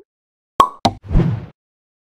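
Sound effects of an animated outro title: two sharp pops about a quarter second apart, followed by a short noisy burst lasting about half a second.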